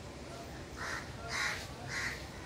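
A crow cawing three times, short calls about half a second apart, the last at the very end.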